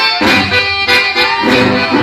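Chamamé played live on a button accordion, which carries the melody with many sustained tones, accompanied by acoustic guitar.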